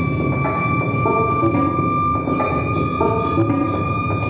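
Live experimental electronic music: a steady high drone held over a looped pitched figure that repeats about every two seconds.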